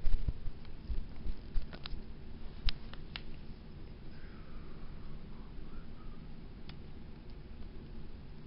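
Handling noise from a handheld camera being moved and turned: a quick run of knocks and rubs over the first three seconds, then a low steady room background.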